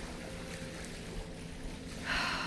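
Steady outdoor background on a beach: wind rumbling on the microphone over a faint, low steady drone.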